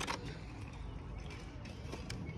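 Low, steady rumble of wind and rolling noise from a bicycle moving along a dirt track, with a few faint clicks.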